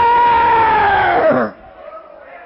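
Preacher's voice shouting one long, high-pitched held cry that drops in pitch and breaks off about a second and a half in. The sound then cuts abruptly to a faint background.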